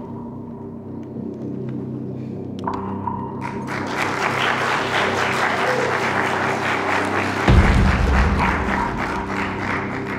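Background music with a crowd applauding, the clapping starting about three and a half seconds in and running to the end. A deep thump sounds about two and a half seconds before the end.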